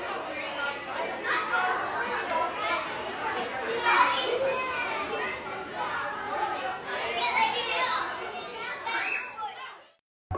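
Many children's voices talking and calling out at once, the sound fading out just before the end.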